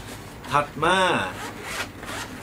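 Zipper on a Think Tank Shape Shifter 15 V2.0 camera backpack being pulled, strongest near the end.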